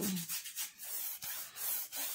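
Paintbrush bristles scrubbing back and forth across a stretched canvas in repeated strokes, laying on paint.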